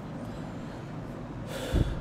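A man's short, sharp breath out through the nose, close to the microphone, about one and a half seconds in, over a steady background hiss.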